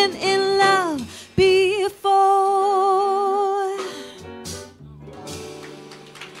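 Female jazz vocalist singing the closing phrase of a slow ballad, ending on a long held note with vibrato that stops near four seconds, over soft accompaniment from the live band; the music then dies down quietly.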